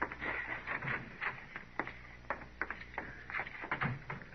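Radio-drama sound effects in an old broadcast recording: a run of irregular light clicks and knocks, over a steady low hum.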